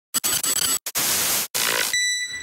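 Static-and-glitch sound effect of a logo intro: three bursts of harsh hiss, each cut off abruptly by a brief dropout.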